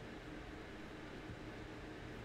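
Faint, steady hiss of a microphone's background noise and room tone, with no distinct sounds.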